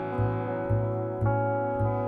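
Instrumental passage on electric guitar and plucked double bass: the guitar holds chords while the bass sounds notes about twice a second, and the chord changes a little past halfway.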